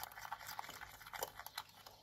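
Plastic spoon stirring a thick, creamy paste of salt, alum, shower gel and starch in a glass bowl: faint, irregular clicks and scrapes.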